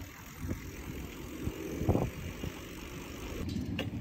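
Bicycle rolling over pavement and then rough sandy ground: a steady low rumble, with a few short knocks and rattles from bumps, the loudest about two seconds in.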